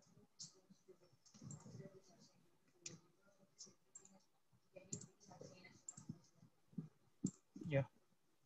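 Faint computer mouse clicks, several of them scattered across a few seconds.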